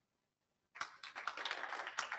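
Audience applauding in a hall, starting suddenly about three-quarters of a second in after a brief silence and carrying on steadily.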